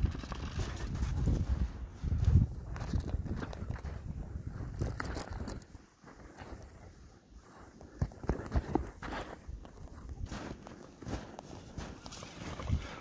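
Footsteps in snow, irregular, with a quieter stretch just past the middle.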